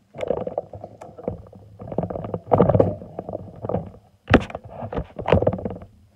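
Handling noise from the recording camera or phone being picked up and repositioned: irregular rubbing and rustling on the microphone, with two sharp knocks in the second half, louder than the speech around it.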